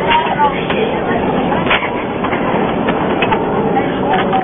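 Scuffling horseplay in a vehicle's back seat: a dense rustle of clothing and bodies against the seats, with several sharp slaps and knocks and shouted voices mixed in.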